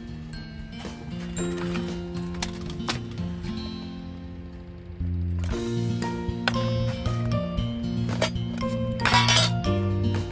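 Background music with light metallic clinks from an aluminium mess tin being handled, and a louder clatter a little before the end as the lid comes off the cooked rice.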